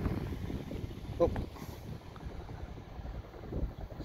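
Wind buffeting the phone's microphone: an uneven low rumble with no steady engine tone.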